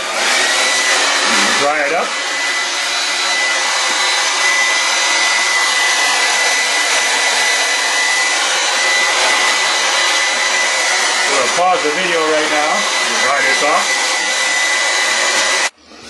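Handheld hair dryer blowing steadily, a dense rush of air with a thin whine; it switches off suddenly just before the end.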